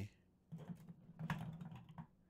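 A string of light clicks and knocks from objects being handled on a desk, starting about half a second in.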